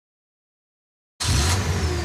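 Silence for just over a second, then a car's sound starts abruptly: a low engine rumble under a steady hiss of noise, with a faint falling whine.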